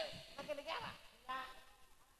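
A man's voice making short, wavering bleat-like calls, three or four in quick succession, fainter than the talk around them: a comic animal imitation.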